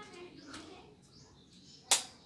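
A faint, quiet voice early on, then a single sharp knock near the end.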